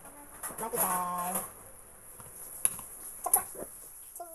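A person's voice holding one drawn-out syllable about a second in, then two short sharp clicks near the end.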